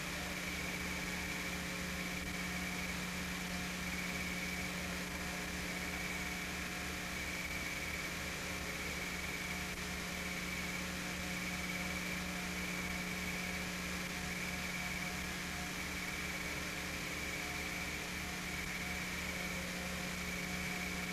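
Steady hum and hiss with a fast, even low pulsing underneath and no separate sound events: the background noise of an old camcorder recording.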